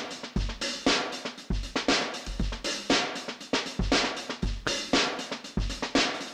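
A sampled drum kit from Addictive Drums 2 plays a steady beat at 118 BPM: kick, snare and hi-hats. It runs through an EQ-based multiband compressor, set so that the upper bands react faster than the low end.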